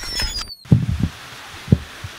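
The end of a glitchy logo-intro sound effect, a high tone sliding downward that cuts off about half a second in. Then a steady hiss with three short low thumps.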